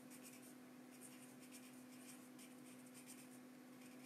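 Near silence: a faint steady hum, with faint irregular scratchy strokes of writing.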